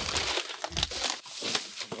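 Plastic bags and packaging rustling and crinkling in irregular bursts as gloved hands dig through rubbish in a dumpster.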